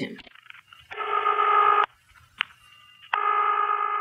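Telephone ring tone heard down the line by the caller: two steady electronic tones, each just under a second long, with a short click in the quiet gap between them.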